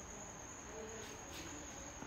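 Quiet room tone with a faint, steady high-pitched tone.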